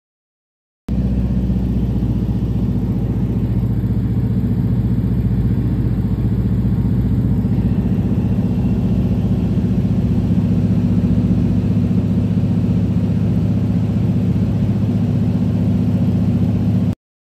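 Floatplane's engine and propeller droning steadily in flight, cutting in abruptly about a second in.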